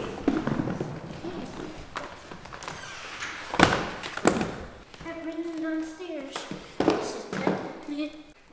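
Roller skates thudding on a hardwood floor: a handful of knocks, the two loudest close together about halfway through.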